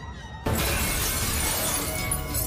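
Film sound effect of a large glass pane shattering, sudden and loud about half a second in, with the crash of breaking glass going on as the shards come down, over a movie score.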